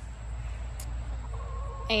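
Chickens clucking in the background, with a drawn-out call in the second half, over a steady low rumble.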